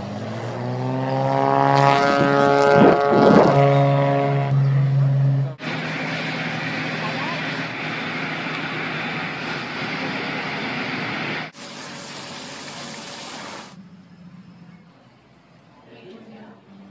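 Seaplane's propeller engine running up for take-off, its pitch rising steadily for about four seconds, then cut off abruptly. A steady rushing noise follows for about six seconds, then shorter, quieter stretches of outdoor background sound.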